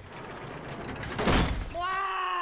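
Cartoon sound effect: a noisy whoosh that builds to a peak about a second and a half in, then fades, followed near the end by a high-pitched cartoon voice.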